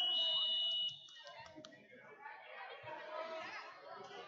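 Scoreboard buzzer marking the end of a wrestling period: a loud, steady, high electronic tone that cuts off about a second in, followed by low crowd chatter.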